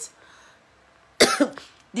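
A woman coughs once, a single sudden sharp cough about a second in, after a brief lull.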